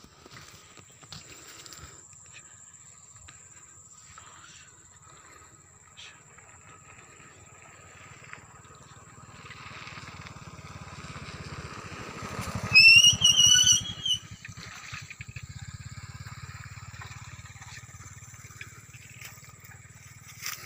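Open-field ambience with a steady high insect drone. A low pulsing engine hum swells and fades through the middle, like a small vehicle passing. At its peak, a little past halfway, there is a loud, brief high-pitched call of a few quick notes lasting about a second.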